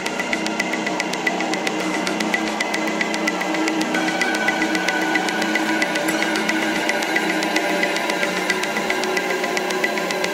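Dark electronic dance track in a filtered breakdown: a fast, even ticking percussion pattern and a pulsing high synth note over sustained synth tones, with the bass and kick drum cut out.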